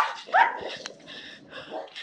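A dog barking twice in quick succession, about half a second apart, right at the start.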